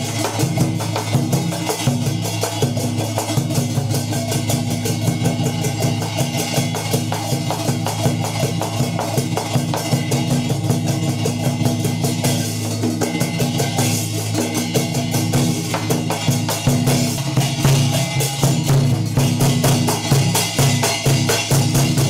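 Percussion-led music: fast, steady drumming over a sustained low tone.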